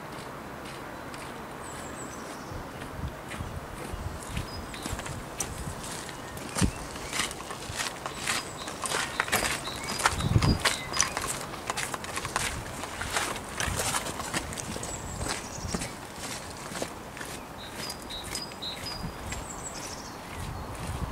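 Footsteps on a gravel path, an irregular run of crunching steps that starts a few seconds in and fades near the end, with a dull bump about halfway. Faint short bird chirps come near the start and again near the end.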